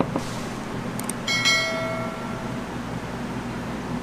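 Two quick clicks, then a bright metallic ding that rings out for about a second: a subscribe-button click and notification-bell sound effect. Under it runs a steady fan-like hum.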